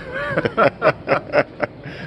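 Laughter from a man: a run of about six short, breathy laugh bursts in quick succession.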